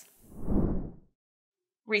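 A low whoosh transition sound effect that swells and fades over about a second.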